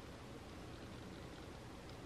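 Faint, steady room tone: a low even hiss with no distinct events.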